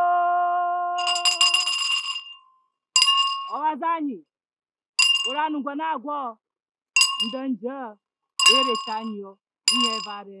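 A metal handbell struck about six times, once every couple of seconds, each ring followed by a woman's short warbling chant. A long held sung note fades out about two seconds in.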